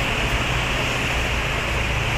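Steady outdoor street background noise with a low hum, like distant traffic.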